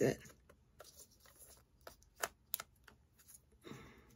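Small plastic clicks and taps of a foldable plastic crate being handled and fiddled with, with a few sharper clicks about two seconds in.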